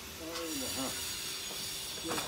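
A steady high-pitched hiss starts about a third of a second in and holds, with a person's voice briefly sounding over it near the start.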